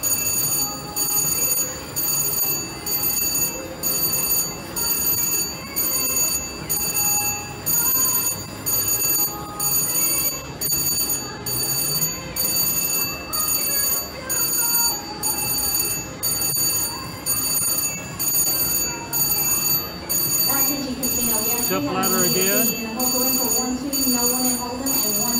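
Slot machine electronic sound effects: a high, ringing chime pulsing evenly about three times every two seconds while the reels spin.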